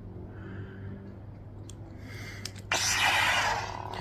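Xenopixel lightsaber with a Kyberphonic custom sound font igniting: a couple of faint clicks, then about two and a half seconds in a sudden loud rush of noise from its speaker, which settles near the end into the saber's steady hum.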